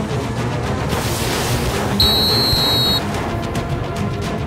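Background film score with a single referee's whistle blast about two seconds in, a steady high shrill note held for about a second.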